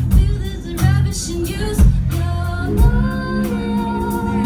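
A live rock band, heard from the audience through a phone's microphone: a woman sings the lead over electric guitar, bass guitar and drums, with a strong drum hit about once a second.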